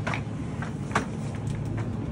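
Supermarket ambience: a steady low hum with background noise, broken by two short clicks, one just after the start and one about a second in.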